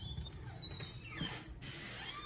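A metal-clad door swings open with a faint, thin, high squeak in its first second, over low room noise.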